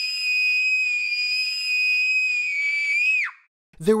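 A girl's long, high-pitched scream, held at one pitch and dropping in pitch as it cuts off a little over three seconds in; she is screaming in fright at a large grasshopper held up close to her face.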